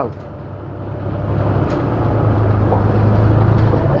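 A low, steady rumble that swells over the first three seconds and then holds.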